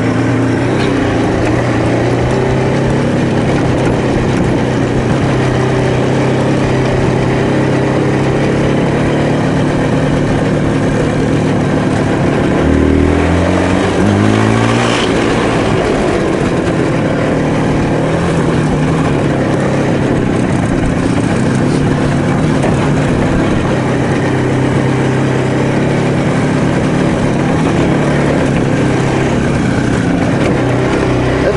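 IZh Jupiter-3 motorcycle's two-stroke twin engine running at steady riding revs on a dirt field track. About halfway through, the revs drop and then climb again.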